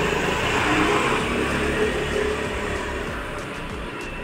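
Small motor scooter engine running as it pulls away down the lane, fading gradually as it goes.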